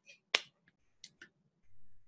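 A single sharp click about a third of a second in, followed by two faint ticks around a second in and a soft low hum near the end.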